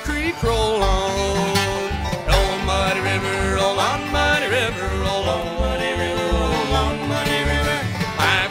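Live bluegrass band playing an instrumental break: fiddle with sliding melody lines over banjo and acoustic guitar, and an upright bass keeping a steady beat.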